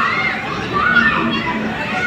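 Children's high-pitched voices and calls over the general chatter of a crowd in a large indoor hall.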